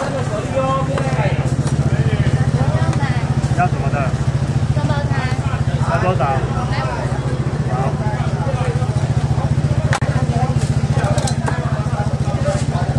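A small engine running steadily with a low, fast-pulsing drone, under the voices of people talking.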